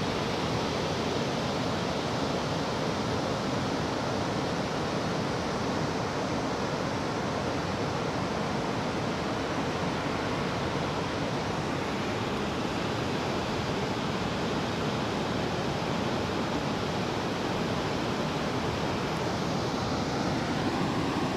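Ocean surf washing onto a sandy beach: a steady, even rush of breaking waves.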